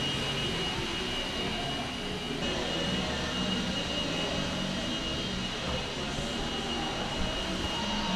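Steady background roar of a large covered hall, with a thin, constant high whine running through it and no distinct knocks or thuds.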